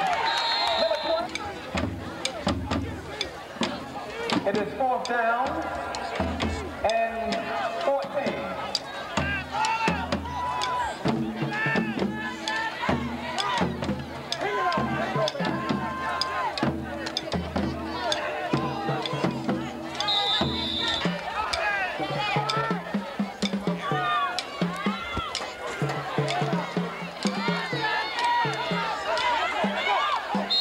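Football crowd in the stands talking and calling out, with a band's drums and horns playing in pulsing blocks through the first two-thirds. A short, high referee's whistle sounds at the start, again about two-thirds through, and at the end.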